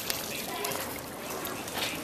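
Water pouring and dripping off a swimmer climbing out of a pool by its ladder, with a sharp click just after the start.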